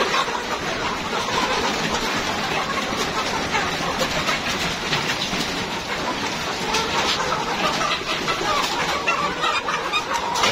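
A caged flock of Rainbow Rooster chickens clucking and calling all together in a steady, dense chorus. The birds are hungry and waiting to be fed.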